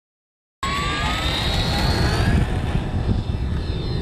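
E-flite Apprentice RC trainer plane's electric motor and propeller whining in flight, its pitch rising slightly, over a low rumble. The sound cuts in suddenly about half a second in.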